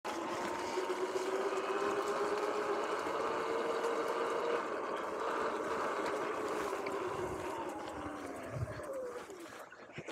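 Electric dirt bike's motor whining steadily as it rides over a grassy trail, over a rushing noise. Near the end the whine falls in pitch and fades as the bike slows down.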